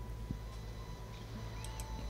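Quiet room tone: a steady low hum with a faint thin steady tone over it, and one soft click about a third of a second in.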